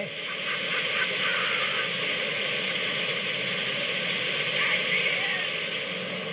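Oil gushing from a newly struck well: a steady rushing hiss, with faint shouts under it.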